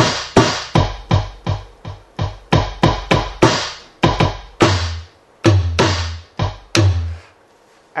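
E-mu Drumulator drum machine's sampled drums, triggered over MIDI from a keyboard: a fast, uneven run of drum hits, about three to four a second, with deeper bass-drum hits joining around the middle. The playing stops about a second before the end.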